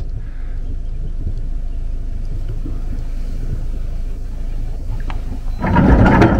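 Sailboat's inboard engine running steadily at low revs, a low hum heard from the bow, while the boat gets under way after weighing anchor. A louder rush of noise comes in near the end.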